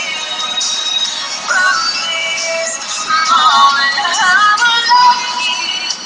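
A woman singing a slow love ballad, with long held notes that bend and waver in pitch.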